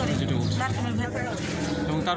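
Women talking, with a steady low hum underneath that is strongest in the first second and a half.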